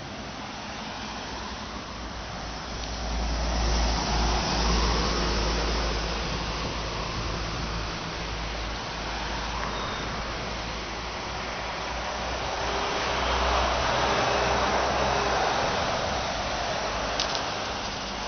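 Cars passing on a road, their tyre and engine noise swelling and fading twice: once about four seconds in and again around fourteen seconds in.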